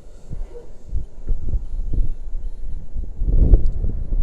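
Wind buffeting the microphone of a body-worn YI action camera in uneven gusts, a low rumble that is loudest about three and a half seconds in.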